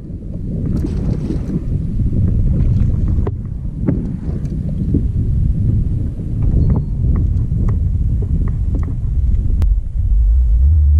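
Wind buffeting the microphone, a heavy uneven low rumble, with scattered light clicks and knocks.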